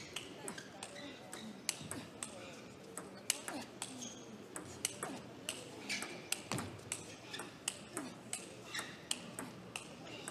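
Table tennis ball clicking sharply against table and bats, several irregular ticks a second, over a murmur of voices.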